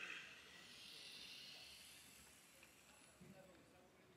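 Near silence: faint outdoor ambience, a soft hiss that fades over the first couple of seconds, with faint distant voices about three seconds in.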